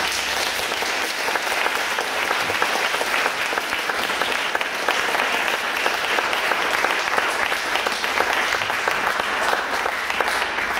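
An audience applauding, a steady, dense clapping of many hands.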